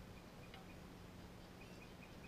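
Near silence: faint outdoor background with a faint steady low hum.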